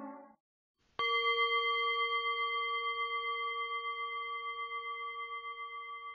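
A singing bowl struck once about a second in, ringing with a steady cluster of pure tones that waver slowly and fade gradually. The tail of a fading musical intro comes just before the strike.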